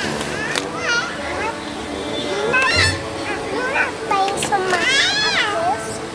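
A young girl's high-pitched voice in short exclamations and chatter, over steady background music.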